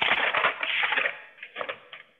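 A burst of crackling, rustling noise heard through a video-call line, thinning into a few separate cracks near the end.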